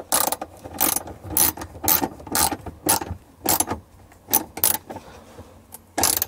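Ratchet wrench tightening a mounting screw, its pawl clicking in about ten short bursts at uneven intervals, one for each back-swing.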